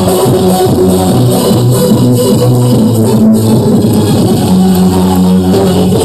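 Loud live band music in an instrumental passage, its bass line moving between held low notes.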